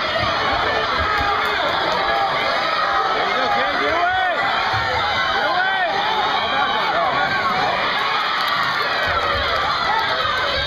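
A crowd of spectators, children among them, shouting and cheering at once: a steady din of many overlapping voices urging on the wrestlers.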